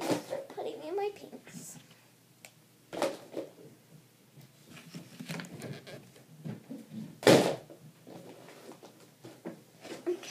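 Plastic paint bottles being handled and set down on a desk: scattered clatters and two loud knocks, about three and seven seconds in, the second the louder. A few murmured words come near the start.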